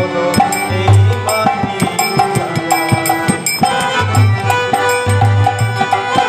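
Harmonium playing the melody of a Bengali devotional song over a steady, repeating percussion rhythm of drum strokes.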